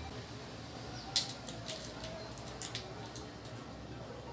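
A few sharp clicks and taps of small hard objects being handled on a worktable. The loudest comes about a second in, and a quick pair follows a little past the middle.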